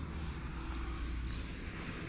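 Diesel tractor engine idling: a steady low hum.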